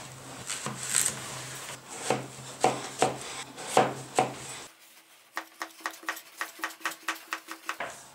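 Kitchen knife cutting peeled zucchini on a plastic cutting board: a few separate slicing strokes, then, after a break about five seconds in, a quick even run of chopping taps as the zucchini is diced.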